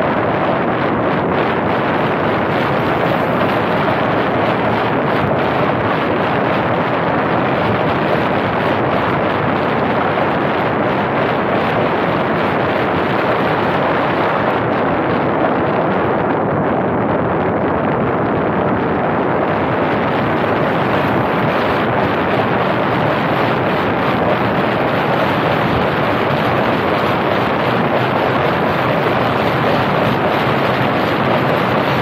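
Steady wind rushing over the microphone of a camera mounted on a moving car, with road noise beneath it. It runs evenly, turning duller for a few seconds just past the middle.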